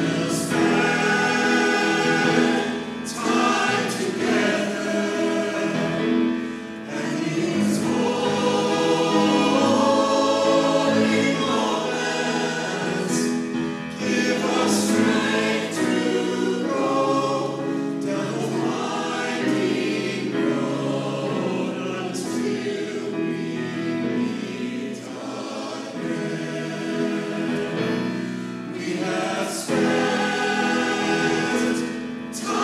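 Mixed choir of men and women singing in parts.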